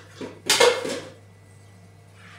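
Dishes and cutlery clinking together as crockery is handled in a dishwasher's racks: a faint clink, then a short clatter about half a second in.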